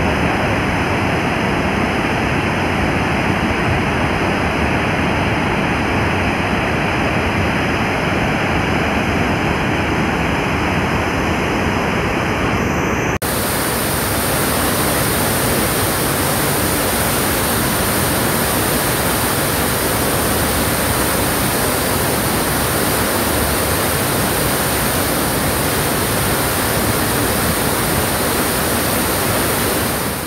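Floodwater pouring through open dam spillway gates: a loud, steady rushing of water. About 13 seconds in the sound changes abruptly to a second recording of the same rush, with more hiss in the high end.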